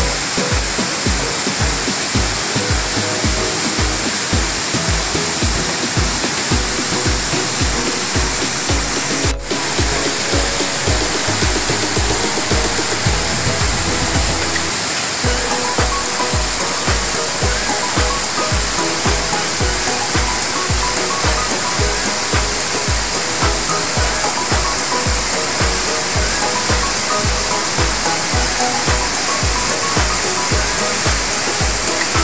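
Background music with a steady bass beat, laid over the steady rush of a waterfall sheeting down a broad rock face. There is a brief break in the sound about nine seconds in.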